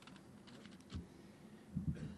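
Faint room tone with scattered small clicks and one soft knock about a second in, during a pause at a lectern microphone.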